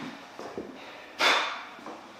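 A single hard, breathy exhale about a second in, fading away over about half a second.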